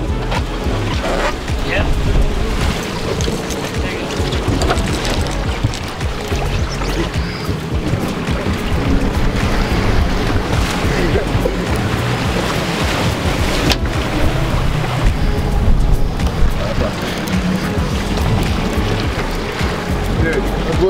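Steady din on the deck of a boat at sea: wind on the microphone over the boat's engine and the wash of the water.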